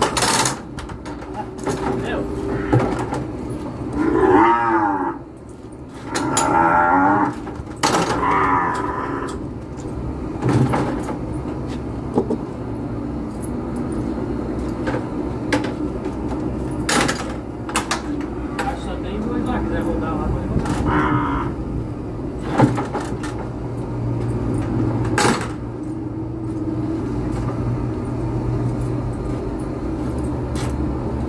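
Weaned calves mooing in a cattle handling chute: several long calls in the first ten seconds and another about twenty seconds in. Sharp knocks and clanks of the chute's gates sound between the calls.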